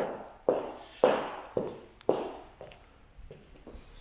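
Footsteps on a laminate wooden floor at a walking pace of about two steps a second, each step echoing briefly in a large empty room. The steps grow lighter in the second half.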